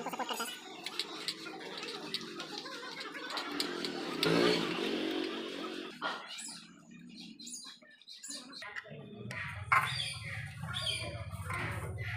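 Metal clinks of a ring spanner on a motorcycle's rear axle and chain-adjuster bolts. Behind them a motor vehicle engine runs steadily from about nine seconds in, with bird chirps.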